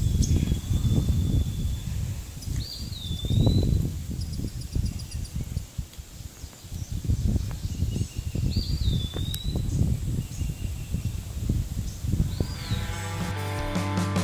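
A bird repeats a short swooping call three times, about five seconds apart, over uneven low rumbling noise on the microphone. Music fades in near the end.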